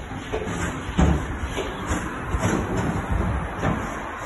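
Plastic wheelie bin being wheeled over rough tarmac, its small wheels rattling and rumbling, with a heavy knock about a second in and lighter knocks through the rest.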